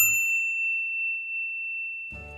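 A single high bell-like ding, struck once and ringing on as one clear tone that slowly fades.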